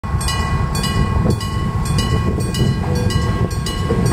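Japanese level-crossing warning bell ringing in a steady repeating rhythm, about two rings a second. Under it is the low rumble of a Kumamoto Electric Railway 03 series two-car electric train approaching the crossing.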